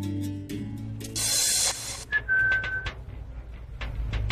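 A short burst of hissing about a second in, then a single steady whistle note lasting under a second, over the fading end of background music.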